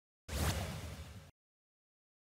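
Editing transition sound effect: a swoosh with a low boom underneath, falling in pitch and fading over about a second before it cuts off abruptly.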